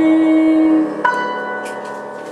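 The closing notes of a piano song: a long held note stops just under a second in. A single high piano note is then struck and left ringing, fading away.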